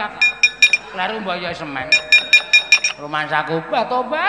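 Keprak, the metal plates hung on the side of the wayang puppet chest, struck in quick runs of ringing metallic clinks: about four near the start and a faster run of about six around the middle. These are the dalang's rhythmic cues that accompany the puppets' movement.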